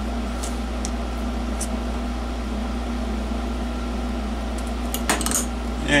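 Light metallic clicks as the restuffed insides of a can-type electrolytic capacitor are pressed down into its aluminium can: a few faint ones in the first two seconds and a sharper one about five seconds in. A steady low hum runs underneath.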